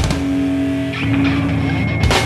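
Rock band recording: held, distorted-sounding chords that change about a second in, with a sharp loud hit at the start and another right at the end.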